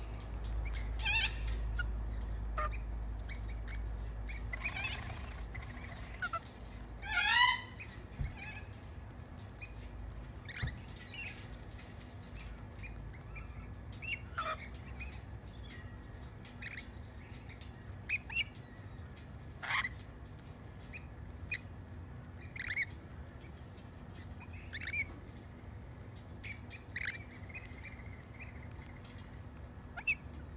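Rainbow lorikeets giving short, scattered chirps and screeches while feeding, with the loudest quick burst of calls about seven seconds in.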